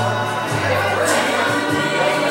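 A live small band with trombone and banjo playing a country song. Sustained horn-like tones sit over a bass line whose note changes about every second.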